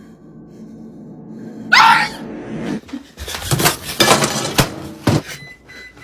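A loud, short scream rising in pitch about two seconds in, followed by a few seconds of rapid knocking and rustling as the phone is jostled.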